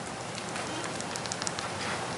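Steady hiss of room noise in a large hall, with a few faint, short clicks and rustles.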